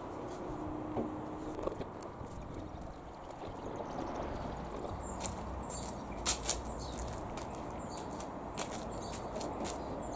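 Steady low outdoor background noise, with a run of short sharp clicks and taps in the second half, the loudest two close together about six seconds in.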